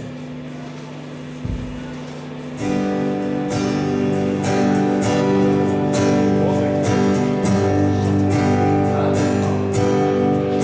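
Live rock band starting a song about three seconds in: strummed acoustic guitar, electric guitar, bass guitar and drums playing together. Before that there is a steady low hum and one low thump.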